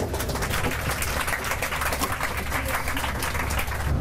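Passengers in an airliner cabin applauding, many hands clapping at once, over a steady low cabin hum.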